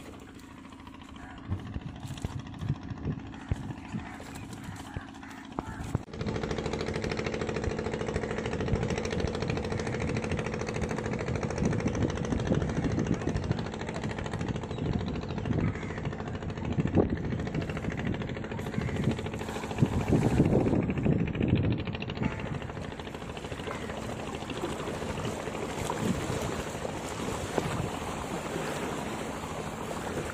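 About six seconds in, a small engine starts a steady drone that carries on under noisy, uneven water and wind sounds.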